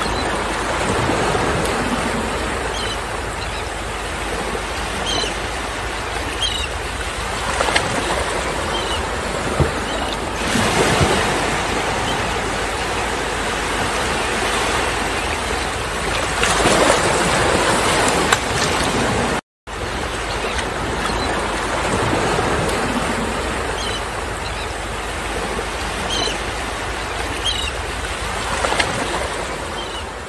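Steady rushing water, like waves or a stream in a nature ambience track, with a few faint high chirps. It swells twice, cuts out for a moment about two-thirds of the way through, then starts again.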